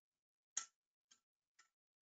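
Two crystal glasses filled with sparkling wine (spumante) clinked together three times, about half a second apart, the first the loudest. Each clink is short and dull, without the long ring of an empty or water-filled glass: the bubbles in the wine damp the glasses' high overtones.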